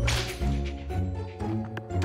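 A cartoon swish sound effect, one sharp whip-like whoosh at the start, over steady background music, with a short click near the end.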